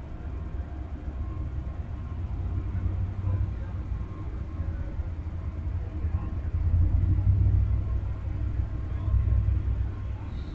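Low, uneven rumble of an Amtrak passenger train's cars rolling slowly past, with the train seemingly coming to a stand; the rumble swells louder about two thirds of the way through.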